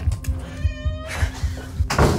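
A cat meows once, briefly, a little past halfway through, over background music with a steady low pulsing beat.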